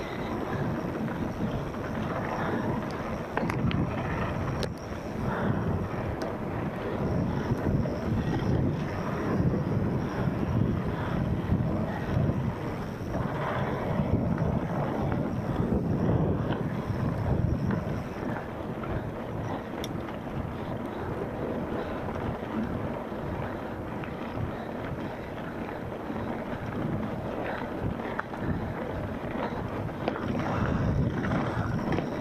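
Wind buffeting the microphone over the rumble and rattle of a mountain bike rolling fast down a rough dirt trail, with scattered knocks as the wheels hit bumps.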